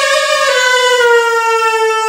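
A wind instrument holding one long, bright note that steps down in pitch about half a second in, then slides slowly lower.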